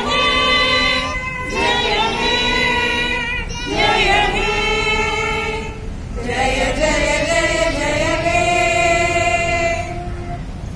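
A group of women singing together in long held notes, the last note held for about four seconds before stopping at the end.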